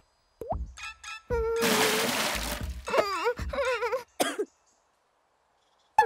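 Cartoon score and sound effects: a quick rising plop, a burst of hiss under a held note, then a wobbly, wavering tune that breaks off about four and a half seconds in.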